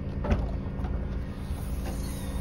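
Steady low outdoor rumble with a faint click about a quarter second in, as the Mazda CX-5's rear tailgate is unlatched and lifted open.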